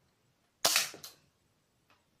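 A homemade LEGO brick-shooting gun firing: one sharp snap a little over half a second in, followed by a second, quieter crack a moment later.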